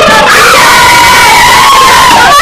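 A group of students singing and shouting together in a traditional song, with a long held high call sinking slightly in pitch.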